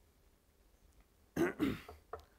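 A man clearing his throat, two quick pushes in succession about a second and a half in.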